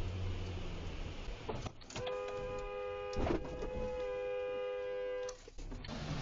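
A car horn sounding one long blast of about three seconds, starting about two seconds in, with a short knock partway through, over the hum of the car and road noise.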